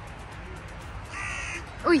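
A crow caws once, a single call of a little over half a second near the end.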